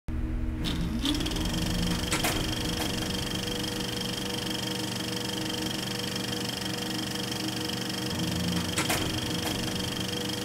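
A steady mechanical whirring drone with several held tones, a short rising whine about a second in, and a couple of sharp clicks: a machine-noise intro to a grindcore track.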